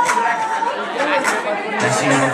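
Loud dance music over a club sound system with the bass dropped out, leaving a wavering vocal line, crisp high percussion and crowd voices; the bass kicks back in just before the end.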